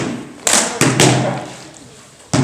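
Hard sparring sticks striking in a fencing exchange: about four sharp knocks within the first second, then dying away.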